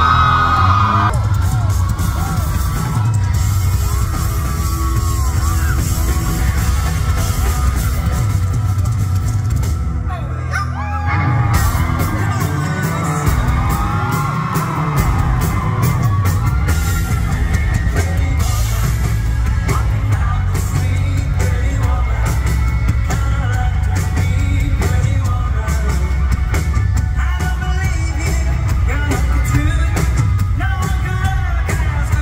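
Live rock and roll band playing, with drums and bass under a man singing into a microphone. The bass drops out briefly about ten seconds in, then the full band comes back in.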